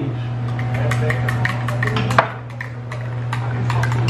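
Serving utensil clinking and scraping against a glass baking dish and a ceramic plate as rice is served: a run of light clicks with one sharper knock about two seconds in. A steady low hum runs underneath.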